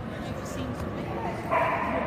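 A dog whining and yipping over background voices in a large hall. The sound gets louder about one and a half seconds in.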